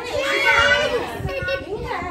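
Young children calling out and shouting excitedly while they play, with one loud, drawn-out high call about half a second in.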